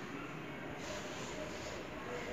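Quiet, steady room tone with no distinct sound event.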